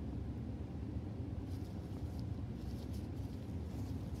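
Steady low background hum, with a few faint soft clicks and rustles about one and a half to two seconds in from a comb and gloved hands handling a section of hair.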